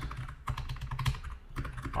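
Computer keyboard typing: a quick, irregular run of keystrokes as a short text prompt is typed.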